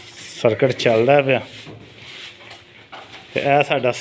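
A man speaking in two short stretches, near the start and again near the end, with quieter background noise between.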